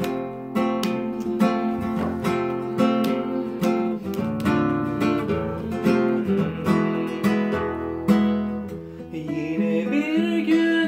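Classical guitar playing the instrumental intro of a song: plucked and strummed chords at a steady pace, the notes ringing on under each new stroke.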